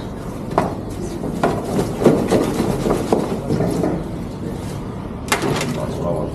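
Scattered knocks and clatter from handling metal fish trays and a weighing scale at a fish counter, with a sharper knock near the end, over a low background murmur.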